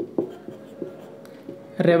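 Marker pen writing on a whiteboard: a run of short strokes and taps as letters are written.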